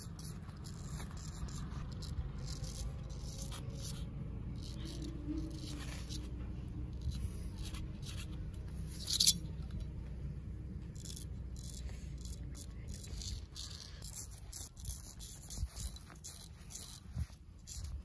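Straight razor scraping through lathered stubble in quick short strokes, with one louder scrape about nine seconds in, over a low steady rumble.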